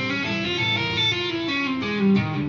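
Electric guitar played legato with the fretting hand alone: hammer-ons and pull-offs between frets five and six, two notes a half step apart, each ringing into the next in a slow, even run.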